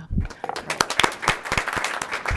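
A small audience applauding, the clapping starting about half a second in.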